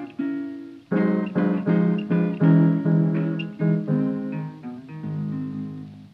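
Closing instrumental bars of a 1930s acoustic blues record: picked acoustic guitar notes over piano, in a quick run of phrases. It ends on a final chord, struck about five seconds in, that dies away.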